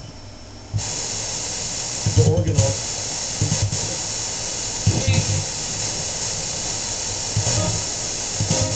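Spirit box sweeping through radio stations: a steady hiss of static broken by brief snatches of broadcast voices several times. The static drops out for a moment right at the start.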